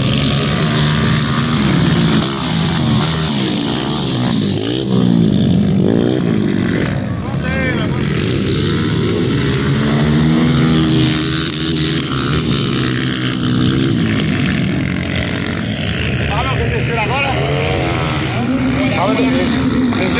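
230cc dirt bike engines running on a motocross track, the pitch rising and falling again and again as riders open and close the throttle and shift.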